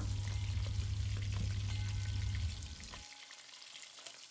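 Mutton pieces sizzling as they fry in oil in a steel pot while a spatula stirs them, with a few faint scraping clicks. A low background hum stops about three seconds in, leaving the sizzle quieter.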